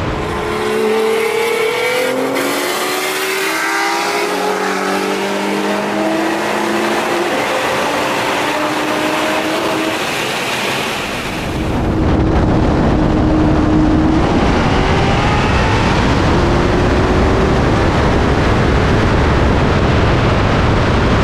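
High-performance cars at full throttle in a highway roll race, engine notes climbing in pitch and dropping back at each gear change. About twelve seconds in this gives way to a strong wind rush over the engine, from a camera mounted on the outside of a car at over 120 mph.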